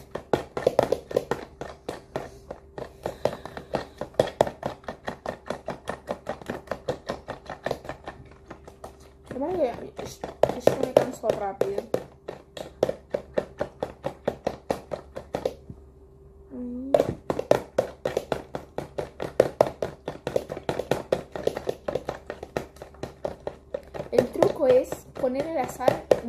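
Fork beating eggs in a plastic container: rapid, even ticks of the fork against the container's sides, with one short pause about two-thirds of the way through.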